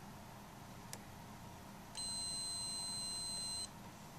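Multimeter continuity beeper sounding one steady high-pitched beep for about a second and a half, starting about two seconds in: the probes across two matching lead posts have found a closed connection.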